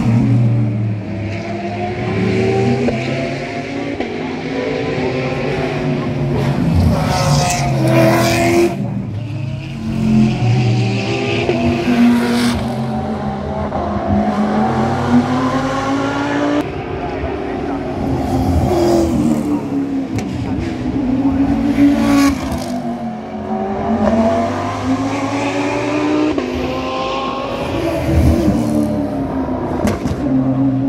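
Racing car engines rising and falling in pitch as they brake, shift down and accelerate again, one car after another. Several close passes bring short louder bursts.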